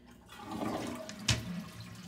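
Toilet flushing, water rushing into the bowl, with one sharp knock a little over a second in as the plastic toilet lid drops shut.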